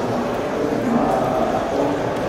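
Indistinct voices murmuring in a large, reverberant hall, with no clear words.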